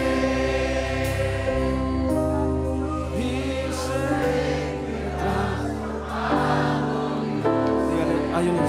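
A congregation singing a slow worship song together over held instrumental chords that change every few seconds.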